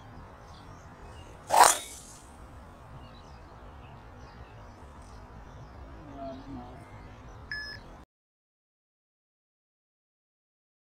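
A golf driver striking the ball: one sharp crack about a second and a half in, over low outdoor background noise. The sound cuts out about eight seconds in.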